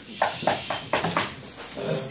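Dry-erase marker squeaking on a whiteboard as it writes, a quick run of short squeaky strokes.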